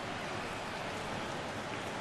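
Steady, even background hiss of the ballpark's ambient sound on the broadcast feed, with no distinct events.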